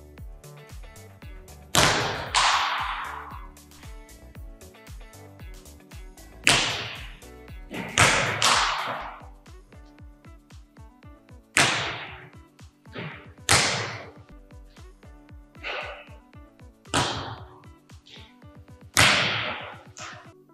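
Volleyballs being served with sharp open-hand slaps and then striking the net or hardwood floor. There are about ten hits spread irregularly, some in quick pairs, each with a long gymnasium echo, over background music.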